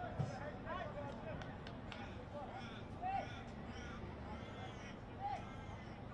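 Faint on-field ambience at a football ground: scattered distant shouts and calls from players, over a low steady background hum.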